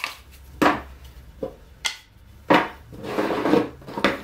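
Wooden frame strips and plywood clamp arms knocking and clacking against each other and the bench top as they are handled, a few separate knocks. Near the end, a longer stretch of wood rubbing and sliding as the arms are pushed together.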